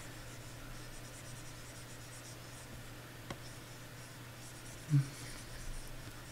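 Faint scratching of a stylus nib on a graphics tablet in repeated short strokes as colour is laid in, over a steady low hum. A single click comes about three seconds in, and a brief low vocal sound, the loudest thing here, comes near five seconds.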